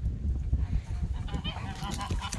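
Goat bleating: a short honking call in the second half.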